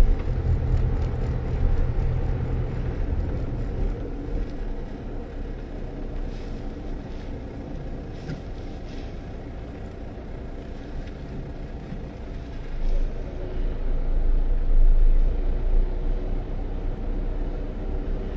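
Car interior road noise: the engine and tyres of a moving car rumbling low and steadily, heard from inside the cabin. It is louder in the first few seconds and swells again about three-quarters of the way through.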